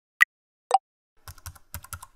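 Typing sound effect of keyboard keys: a single crisp key click just after the start, a lower click a little later, then a quick, uneven run of key clatter from just past one second in.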